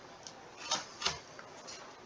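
A few faint, short clicks or taps at irregular intervals over quiet room tone.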